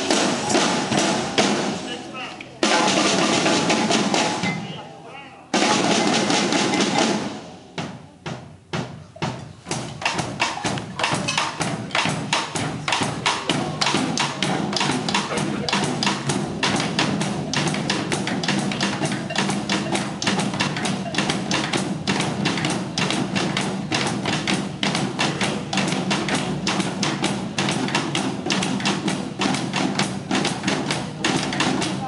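Percussion ensemble of drum kits, snare drums and conga drums playing together. Two loud swells with a drop between them, a few scattered strokes, then from about ten seconds in a fast, steady run of drum strokes.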